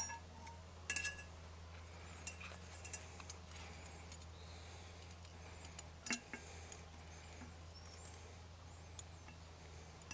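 A large glass jar clinking and tapping now and then as a gloved hand works at its mouth: a few sharp clinks, the loudest about six seconds in, with lighter ticks between.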